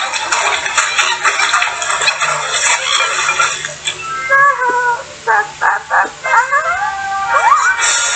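Cartoon soundtrack: music for the first half, then short, high, squeaky yelps and cries with quick rising and falling slides.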